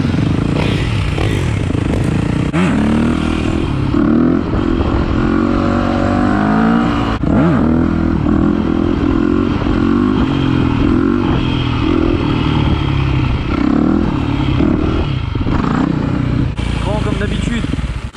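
Yamaha YZ250F dirt bike's four-stroke single-cylinder engine running under way, its revs rising and falling repeatedly as it is ridden.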